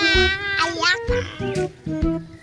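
Background music with a steady bass, with a high-pitched, wavering cry over it in the first second or so that bends down in pitch.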